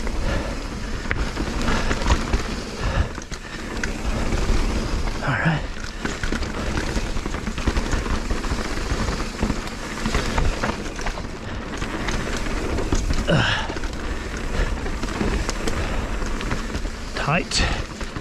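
A mountain bike riding fast down a dirt and rock singletrack. The knobby tyres rumble over the ground while the bike rattles and knocks over roots and rocks, giving a dense run of small clicks and clunks.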